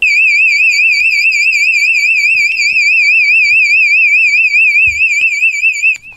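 Household smoke detector in alarm, set off by smoke from a burning paper strip held under it: a loud, shrill tone warbling rapidly up and down, several times a second.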